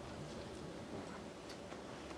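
Faint, scattered light clicks and rustles from a performer moving about the stage, in an otherwise quiet hall.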